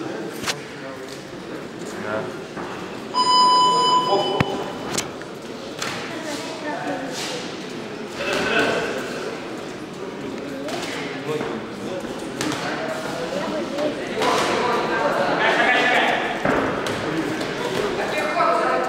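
Electronic ring buzzer sounding once, a steady tone for just over a second, signalling the start of the boxing round. Voices shout and talk in the echoing hall around it.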